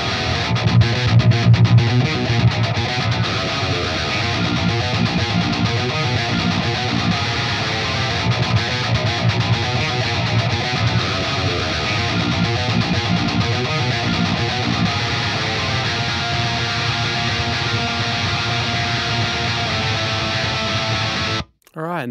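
Heavily distorted metal rhythm guitar riff played back through the Fortin Nameless amp-simulator plugin, dense and steady, a little louder for the first couple of seconds and stopping just before the end.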